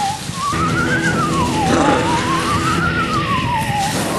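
A siren wailing, its pitch rising and falling about every two seconds with a fast warble.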